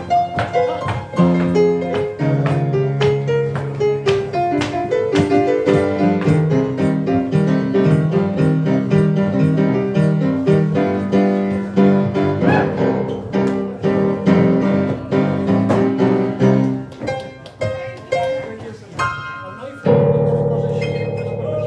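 Upright piano playing instrumental swing jazz in stride style, a busy run of bass notes, chords and melody. It drops softer near the end, then a loud high chord.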